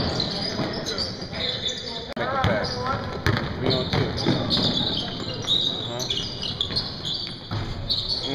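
Basketball game on a hardwood gym floor: the ball bouncing and players' feet on the court, with scattered sharp knocks and players' voices calling out in the hall.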